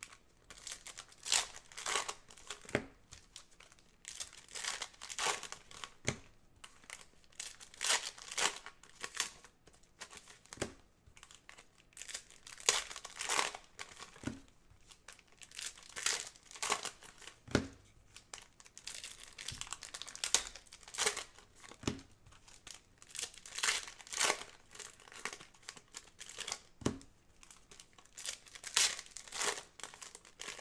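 Foil wrappers of 2017 Panini Contenders football card packs crinkling and tearing as gloved hands rip them open, in irregular bursts every second or so.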